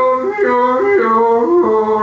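A man's voice yodel-singing wordless 'yo-ol, lay-ol' syllables. The pitch jumps up and down between notes every third of a second or so.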